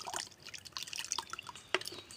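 Crushed aloe vera in water being poured into a plastic mesh strainer, the liquid dripping and trickling through into the bucket below in small scattered drops, with one sharper click near the end.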